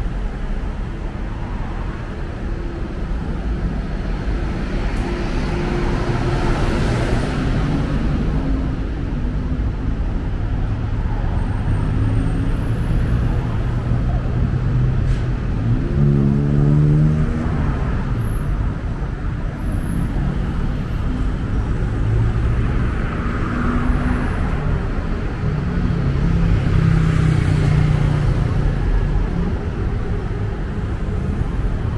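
Steady city road traffic: cars, motorbikes and buses passing on a busy multi-lane road, swelling louder as vehicles go by, with a brief pitched tone about halfway through.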